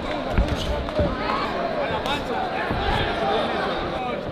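Voices shouting over one another from ringside and the arena crowd during a boxing bout, with a few sharp thuds from the ring, the loudest about half a second and a second in.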